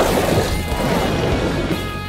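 Cartoon sound effects for a mecha-style vehicle transforming and launching: a sudden crash at the start, then a busy rush of noise, over background music.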